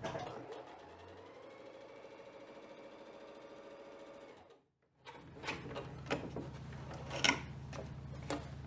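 Bernette 05 Academy sewing machine stitching a seam through layered quilt fabric at a steady, rapid run. It stops about four and a half seconds in, and a few sharp clicks follow as the fabric is handled.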